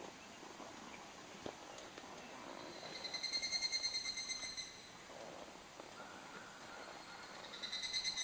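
A high, rapidly pulsed trilling animal call, lasting nearly two seconds about three seconds in and returning briefly near the end, over faint background hiss.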